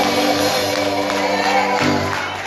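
Gospel singing by a group of voices with instrumental accompaniment, on long held notes, with a change of chord near the end.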